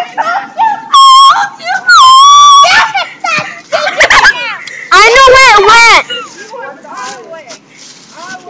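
Girls' voices squealing and shrieking, with two long, held high-pitched squeals about one and two seconds in and a loud shout about five seconds in, loud enough to distort the recording.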